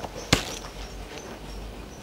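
A single sharp tap or click, then faint handling noise over a low steady hum.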